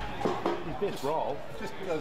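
People's voices talking, the words not clear enough to make out.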